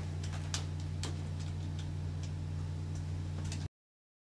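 Irregular light clicks of game-controller buttons being pressed, over a steady low electrical hum. Everything cuts off suddenly near the end.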